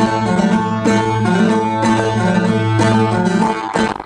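Bağlama (Turkish long-necked saz) played solo: a plucked melody over a steady low drone from the open strings, which stops near the end. This is the instrumental introduction to a folk song.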